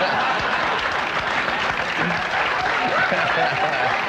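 Studio audience laughing and applauding, with laughter and voices from the stage mixed in.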